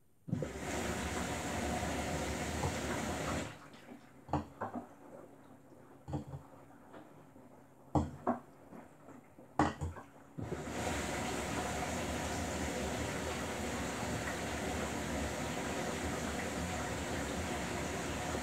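Samsung Bespoke AI WW11BB704DGW front-loading washing machine taking in water: water rushing in for about three seconds, then a pause with a few short knocks as the drum turns the laundry, then water running in again steadily from about ten seconds in.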